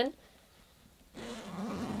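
Near silence for about a second, then a soft rustling as hands handle and grip a padded fabric zipper pouch.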